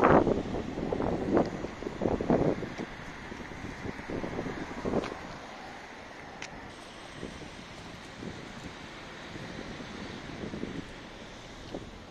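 Wind buffeting the microphone in irregular gusts, loudest in the first few seconds, then easing into a steadier rush over the hum of the city street.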